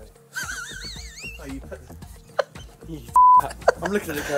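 Edited soundtrack: a wavering, warbling whistle-like sound effect lasting about a second, then a short, loud, steady beep near the end, over background music and snatches of voices.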